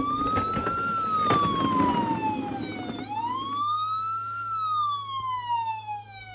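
Electronic siren wail from a Barbie toy ambulance, rising and falling slowly twice. A rough rumble of the toy's wheels rolling over carpet runs under it for the first few seconds.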